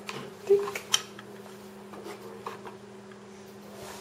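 Small plastic and metal cable connectors being handled and pushed together: a sharp click about half a second in, another just before a second, then lighter rattles and taps. A steady low hum runs underneath.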